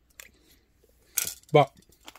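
Dinner plate and plastic spoon being handled and pushed aside on a cutting-mat tabletop: a faint click near the start, then a short scrape or clink a little over a second in.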